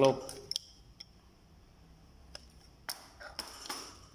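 A few light, separate metal clicks and clinks from a chrome adjustable wrench being handled and hung back on its display hook, with quiet between them.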